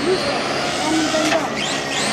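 A 1/5-scale radio-controlled car's motor revving up and down as the car drives, its pitch sweeping upward in quick glides several times.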